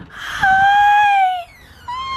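A small dog whining in greeting: one long high whine of about a second that sags slightly at its end, then another whine starting just before the end.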